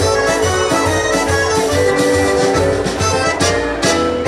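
Live band music led by a piano accordion playing held, moving melody notes over a steady drum-kit beat.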